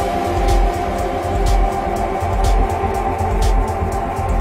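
Downtempo electronic music in a melodic techno style: a steady low bass and kick pulse under sustained synth pads, with a short hi-hat tick about once a second.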